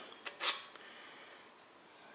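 Light metallic clicks from a roller rocker arm being handled and lifted off its stud on a small-block Chevy 350 cylinder head, two or three short clicks in the first half-second.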